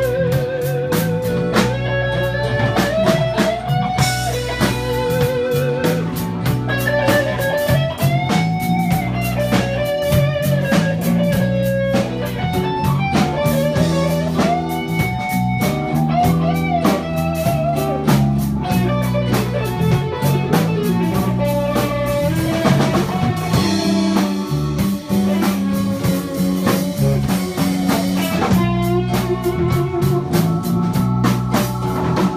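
Live blues band playing: an electric guitar plays a lead line of bent, wavering notes over bass guitar and drum kit.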